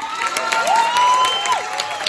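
Theatre audience cheering and applauding, with a few long whoops that slide up and then down over the clapping.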